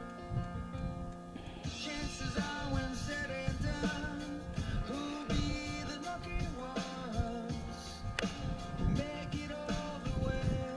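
Background music with a steady beat; more instruments come in just under two seconds in.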